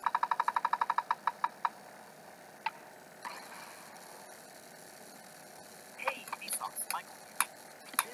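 Cartoon sound effects played through laptop speakers. A quick run of short high beeps, about ten a second, slows and stops in under two seconds. Scattered clicks and short blips follow, bunched together near the end.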